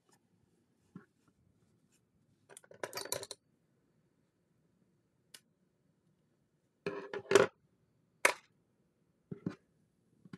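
Scattered handling noises from small objects on a desk: a few short scrapes and rustles, each under a second, with a sharp click about eight seconds in.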